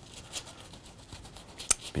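Paintbrush scrubbing oil paint onto canvas in quick, scratchy strokes, with one sharp tick near the end.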